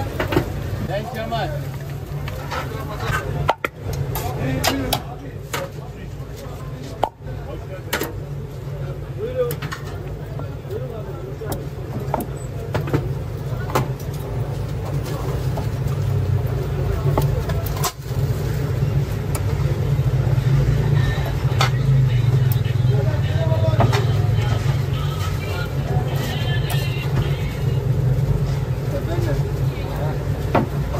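Busy street-side food stall ambience: a steady low rumble, louder in the second half, under indistinct background voices and scattered clicks and knocks.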